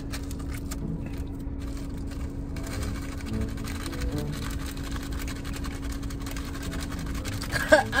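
Steady low hum of a car cabin with one unchanging tone, with a few faint clicks and rustles of plastic food packaging.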